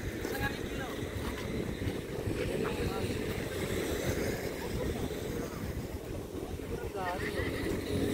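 Wind buffeting the microphone in a steady low rumble, with faint talk from people nearby.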